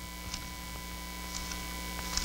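Steady electrical mains hum in the microphone and sound system, with a few faint clicks.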